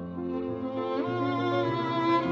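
A slow violin melody with piano accompaniment: about a second in, the violin slides up to a higher note and holds it with vibrato over held lower chords.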